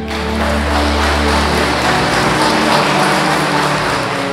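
A congregation applauding, many hands clapping together, starting suddenly and carrying on throughout, over sustained background music.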